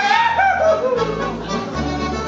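A yodeled call, high and breaking downward in pitch in several steps over about a second, over accordion dance music.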